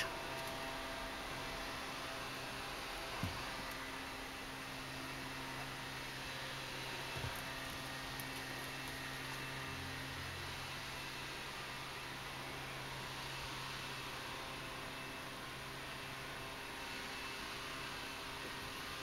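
Steady, fairly quiet hum and hiss of room tone, with two faint, brief knocks, the first about three seconds in and the second about four seconds later.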